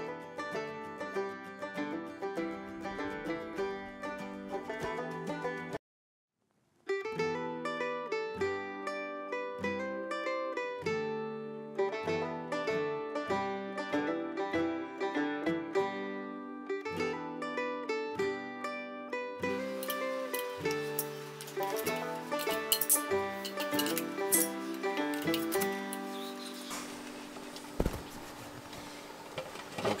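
Background music with a quick run of plucked-sounding notes, cutting out completely for about a second some six seconds in.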